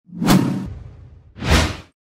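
Two whoosh sound effects of an animated logo sting: the first swells up about a quarter of a second in and fades over half a second, the second is shorter and comes near the end.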